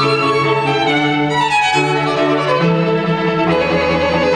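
Small live string ensemble of violins and cello playing held, bowed notes in a slow-moving piece, with the bass line changing pitch about once a second.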